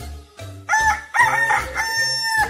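A rooster crowing cock-a-doodle-doo, starting a little way in: two short rising notes, then a long held note that runs past the end. Background music with a regular bass beat plays underneath.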